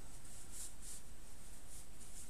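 Soft rustling of a felt pouch being handled and folded, two faint brushes about half a second and nearly a second in, over steady background hiss.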